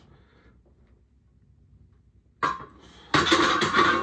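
A loaded barbell with iron plates being set back onto a bench rack's metal hooks: a sharp metal clank with a short ring about two and a half seconds in, then louder clanking and rattling near the end.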